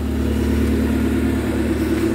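MG TF 135's 1.8-litre K-series four-cylinder engine idling steadily.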